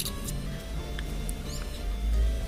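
Soft background music with held tones. Over it come a few faint ticks and a brief high squeak as a dried corncob stopper is twisted into the neck of a glass bottle to test the fit.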